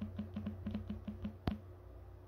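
Typing on a phone's touchscreen keyboard: about eight short key-press blips in quick succession, then one sharper click about a second and a half in.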